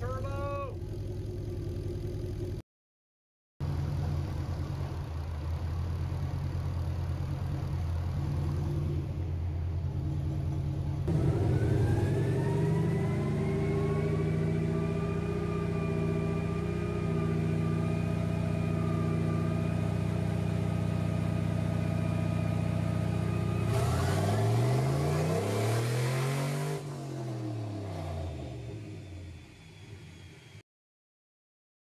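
Turbocharged 5.3-litre V8 running steadily, then about eleven seconds in rising to a higher steady speed with a high whine over the engine note, held for about twelve seconds. Near the end the engine pitch swings up and back down, and the sound fades.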